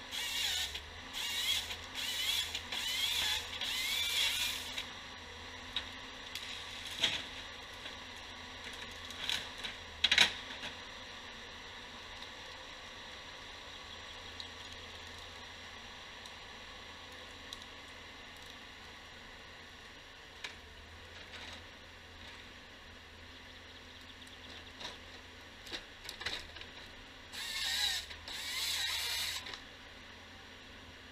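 Timberjack 1470D harvester at work, with a faint steady engine hum throughout. Over it come creaking, squealing bursts from the harvester head and boom for the first few seconds and again near the end. A few sharp knocks fall in between.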